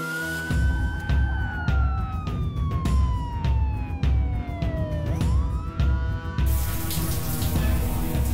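Film soundtrack: a siren wailing over music with a pulsing low beat and percussive hits, its pitch rising, falling slowly for about four seconds and rising again. About six and a half seconds in, a steady rush of falling water joins.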